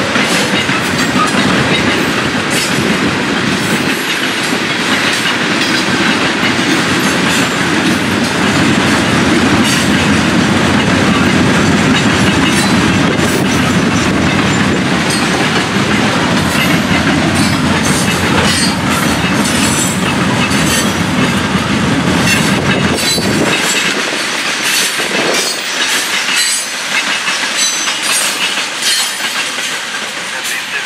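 Loaded freight hopper and gondola cars rolling past on steel wheels: a steady rumble with clickety-clack over the rail joints and sharp clanks and squeaks. The deep rumble drops away about 24 seconds in as the last cars approach.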